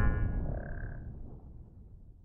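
The dying tail of a logo-sting boom: a low rumble fading away over about a second and a half, with a short steady high tone about half a second in.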